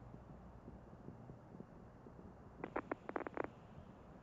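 Faint steady background hiss, broken about two and a half seconds in by a quick run of about eight sharp clicks inside one second.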